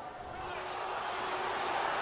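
Hockey arena crowd cheering after a goal, a steady wash of noise that grows gradually louder.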